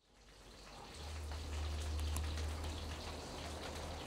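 A steady hiss with faint scattered crackles, fading in from silence, and a low steady hum that joins about a second in.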